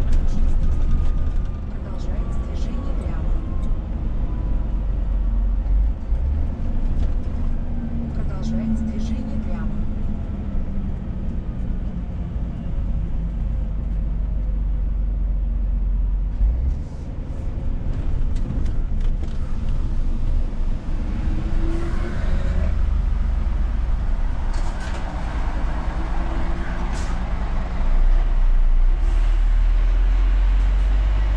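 Inside the cab of a Scania S500 truck: steady engine and road rumble as the truck slows toward toll booths, with engine tones falling in pitch in the first half.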